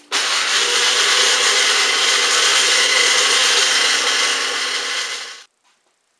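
Small blender running steadily at full speed, grinding dried vegetable bouillon crumbles into powder, then cutting off about five seconds in.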